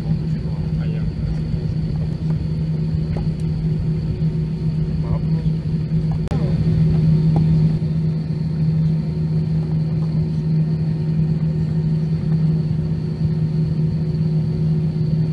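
Cabin noise of an Airbus A320 taxiing: a steady low engine hum over a rumble, with a slight rise in level about six seconds in.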